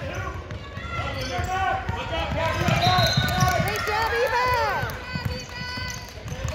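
A basketball being dribbled on a hardwood court, under many overlapping, unclear shouts from players and spectators.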